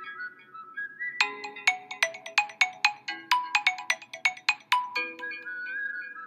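Background music: a light, bell-like melody. About a second in, a quick run of sharp plucked notes begins, about four a second, each dying away, before it returns to held tones near the end.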